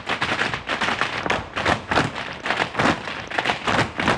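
Ensemble tap dancing: many tap shoes striking a stage floor together in quick rhythmic runs of taps, with no music behind them.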